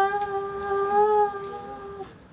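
A young woman singing one long held note without accompaniment, its pitch steady with a slight waver partway through, fading gradually and stopping near the end.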